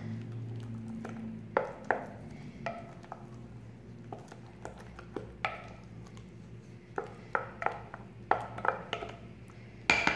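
Wooden spoon stirring mayonnaise into mashed potato in a glass container, with scattered light knocks and clicks of the spoon against the glass.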